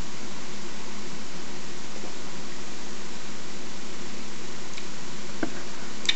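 Steady background hiss with a faint low hum, and one faint click near the end.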